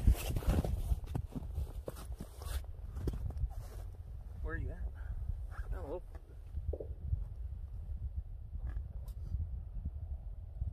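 Wind buffeting the microphone as a steady low rumble, with footsteps crunching in snow and scattered clicks in the first few seconds. Two short wavering vocal sounds come about four and a half and six seconds in.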